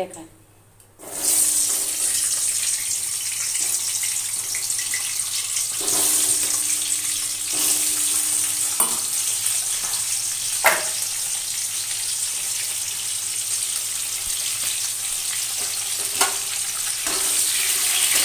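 Potato wedges sizzling steadily in hot oil in a metal kadai, the sizzle starting about a second in. A few sharp clicks of a utensil against the pan are heard along the way.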